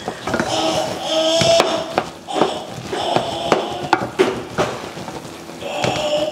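Wooden spoon breaking up and stirring chunks of yam in a metal pot of simmering porridge, with repeated knocks and scrapes against the pot over a crackling sizzle. Soft held background music tones run underneath.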